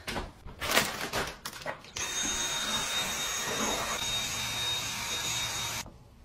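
A few short knocks and rustles, then about two seconds in a small motor appliance starts running with a loud, steady whir and a thin high whine, cutting off suddenly just before the end.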